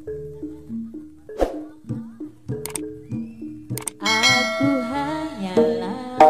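Live Javanese gamelan music: pitched metal keyed instruments play a steady repeating figure of about three notes a second, cut by a few sharp percussive strikes. About four seconds in, a louder, wavering melodic line joins over it.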